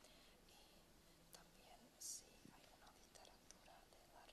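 Faint whispering: a woman quietly interpreting a spoken question to the person beside her, with one sharper hiss about two seconds in.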